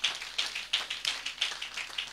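Church congregation clapping: many scattered, uneven hand claps.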